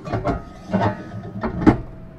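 White plastic enclosure cover sliding down over an equipment housing, rubbing and knocking several times, the loudest knock about one and a half seconds in.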